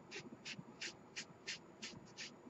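Craft sponge being dabbed and rubbed around the edges of a cardstock card to ink and distress them, a faint soft scuff about three times a second.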